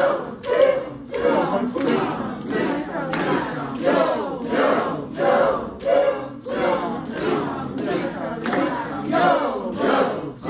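A roomful of adult voices chanting rhythm syllables such as "yo" and "quack" in a multi-part spoken canon, the groups entering one beat apart, so the words overlap in a steady pulsing beat.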